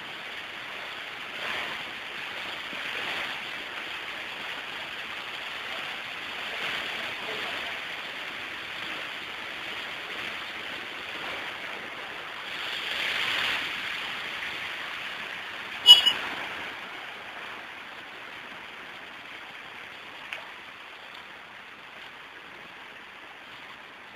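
Steady rush of muddy floodwater flowing across a road, swelling a little now and then, with one sharp knock about two-thirds of the way through that is the loudest sound.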